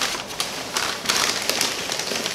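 Brown kraft paper bag crinkling and rustling as it is handled and crumpled, a dense run of crackles and small snaps.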